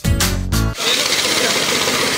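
The last notes of a music jingle, cut off under a second in by a loud, steady mechanical noise with a fine rattling texture, from a machine or power tool running nearby.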